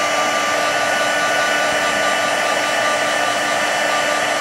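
Electric embossing heat gun blowing steadily, a continuous whoosh with a faint steady whine, as it melts embossing powder on card stock.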